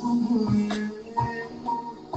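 Music: a short worship song with keyboard accompaniment and a steady drum beat.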